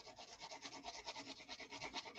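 A felt-tip marker colouring in a paper plate: faint, quick back-and-forth scribbling strokes, about seven a second.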